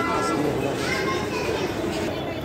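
Crowd chatter: many people's voices talking at once in a busy public space.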